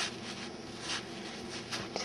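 Soft rustling of yarn being worked on a metal crochet hook, a few short brushes of hook and hands against the yarn, over a faint steady hum.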